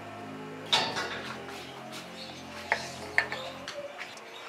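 Background music with steady notes that stop shortly before the end. Over it come sharp metallic clinks of hand tools and parts on a GY6 scooter engine being reassembled: one just under a second in, then two close together past halfway.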